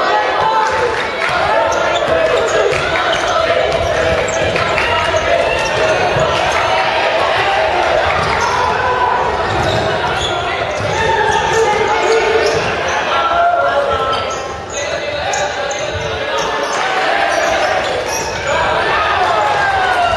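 Basketball bouncing on a hardwood gym floor during play, under continuous shouting and calling from players and the bench, echoing in a large gymnasium.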